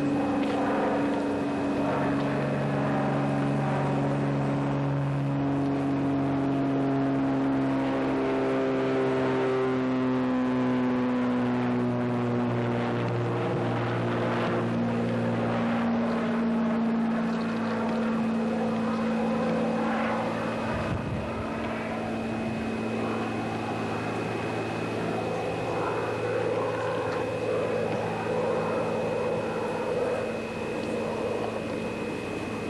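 An engine running steadily, its pitch sliding slowly down over the first half and then holding level, with a thin high steady whine throughout.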